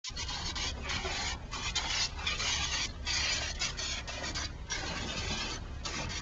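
Garden hose spray nozzle jetting water into a shallow plastic kiddie pool, a steady hiss and splash broken by short gaps several times.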